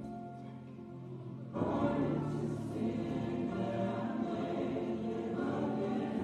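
A choir singing slow, sustained, gospel-style music with accompaniment, swelling louder about one and a half seconds in.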